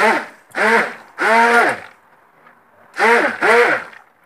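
Five loud, drawn-out vocal sounds. Each one rises and then falls in pitch. Three come in quick succession, and after a pause two more follow near the end. No blender motor is heard.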